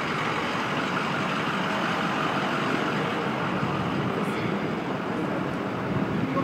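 Steady noise of idling emergency trucks and city traffic, even and unbroken.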